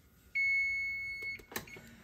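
Electric range's digital oven timer beeping: one steady high-pitched tone lasting about a second, signalling that the 45-minute countdown has run out. A short click follows near the end.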